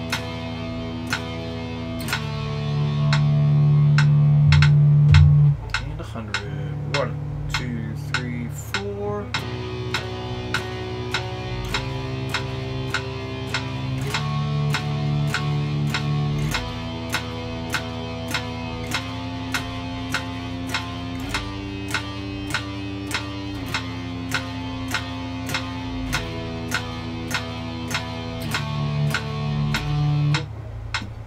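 Electric guitar playing power chords, each held and changed every two to three seconds, louder for a few seconds near the start. A steady click keeps time underneath, typical of a metronome set to 60 bpm.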